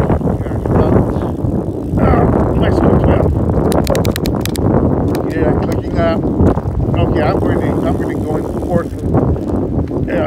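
Wind buffeting the microphone of a phone on a moving bicycle, a dense, steady rush, with a quick run of sharp clicks about four seconds in.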